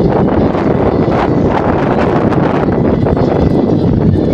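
Wind buffeting the camera microphone: loud, steady wind noise.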